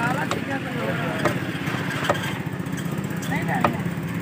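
Meat cleaver chopping chicken pieces on a wooden block: about four sharp chops, roughly a second apart, over a steady low motor hum.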